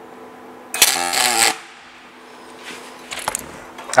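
A MIG welder striking one short tack weld on a steel T-joint: the arc crackles for under a second, starting about three-quarters of a second in and cutting off sharply. A fainter, shorter noise follows about three seconds in, over a steady hum.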